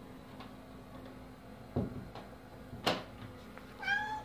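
A domestic cat meowing once near the end, after two short knocks about a second apart.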